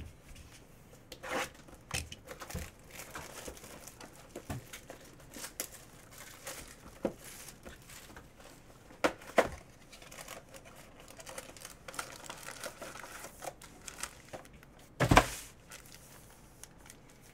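A sealed cardboard hobby box of 2018 Panini Phoenix football cards being unsealed and opened by hand: crinkling and tearing, with scattered taps and clicks of cardboard. Near the end comes a sharp thump, the loudest sound.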